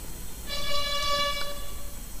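A single steady horn tone, held for about a second and a half.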